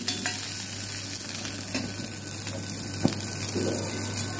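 Butter, garlic and cream sauce sizzling in a stainless steel pan on a gas burner as a spoon stirs it, with one sharp knock of the spoon against the pan about three seconds in.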